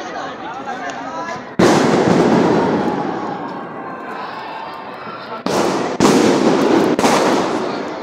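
Fireworks going off. A sudden loud burst about one and a half seconds in fades over a few seconds, then three more burst in quick succession in the second half, each starting sharply and tailing off.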